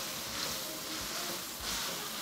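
Prawns and chicken frying in oil in a hot wok, a steady sizzle as they are stirred.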